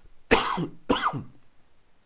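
A man coughing twice, two short coughs about half a second apart, with his hand held over his mouth.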